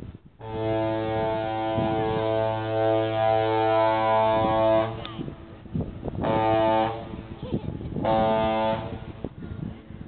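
Ship's horn of the freighter Calumet sounding a salute: one long blast of about four and a half seconds, then two short blasts, each under a second.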